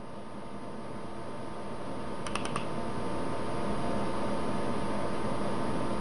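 Steady room hiss with a faint hum, slowly growing louder, and a quick run of about four light computer-mouse clicks a little over two seconds in, as the configuration program is opened from its desktop icon.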